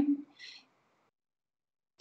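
The tail of a woman's speech trailing off in a low hum, a short faint sound about half a second in, then dead silence for over a second.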